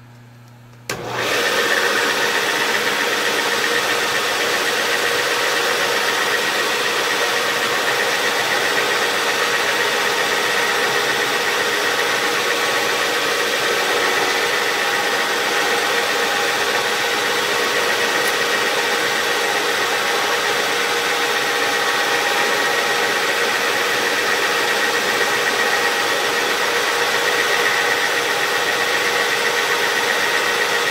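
Knee mill spindle switched on about a second in, then running steadily with a constant hum and whine, set at around a thousand rpm to spin an edge finder.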